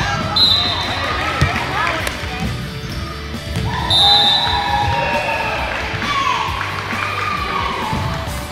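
Indoor volleyball game sounds in a gym: voices calling and cheering, a few sharp knocks of the ball being played early on, and two short, steady, high referee whistle blasts, one just after the start and a louder one about four seconds in, signalling the next serve.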